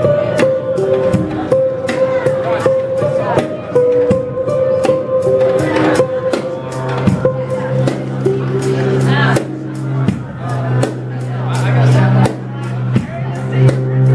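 Live violin, upright bass and drum kit playing an improvised piece: the violin holds a long high note through the first half, then the upright bass comes in with a low sustained note about halfway, over steady drum strokes.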